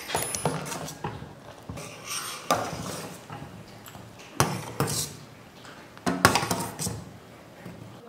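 A steel ladle stirring and scooping milk in a stainless-steel pot, scraping and clinking against the metal a few times at irregular moments. The milk is being stirred constantly as it boils down so that it does not catch on the bottom.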